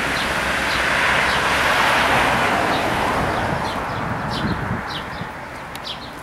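A car driving past on the road, its noise swelling over the first two seconds and then fading away, while small birds chirp in short high notes throughout.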